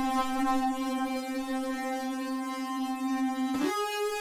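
A software synthesizer lead (Alchemy in Logic Pro X) holds one long, bright, buzzy note. About three and a half seconds in it slides quickly up to a higher held note, the glide of a patch with its glide time turned up.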